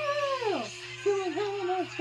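A heavy metal cover sung over electric bass. A long, high, held vocal note slides steeply down about half a second in, then gives way to a short run of sung notes.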